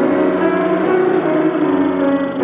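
Piano music with full, sustained chords.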